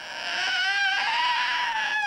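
A toddler crying: one long, high wail held through the whole stretch, rising slightly in pitch and then sinking. He cries during a blood test for HIV, his fingers held by an adult.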